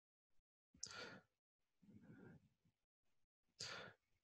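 Near silence with a few faint breaths close to the microphone: one about a second in, a softer one around two seconds, and another just before the end.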